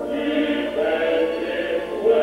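Choir singing sustained chords, the voices holding long notes and moving to a new chord about half a second in.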